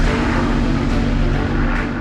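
Spitfire's V12 piston engine droning steadily as the fighter makes a fast low pass, under background music.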